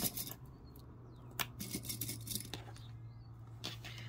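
Plastic sewing clips clicking shut one after another as they are snapped onto the edges of two layers of fabric, with a few faint rustles of the fabric being handled.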